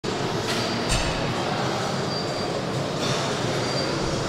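Steady, even background noise of a large gym hall, with a short thud just under a second in.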